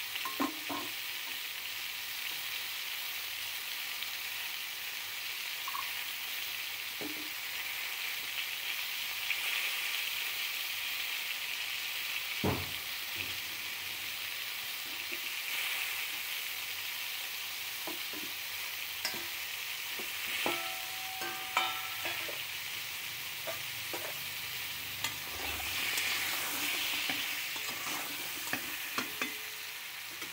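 Whole peeled pointed gourds (potol) sizzling steadily as they fry in oil in a kadai over a lowered flame, with scattered clicks and knocks through it, the sharpest about halfway and again about two-thirds of the way in.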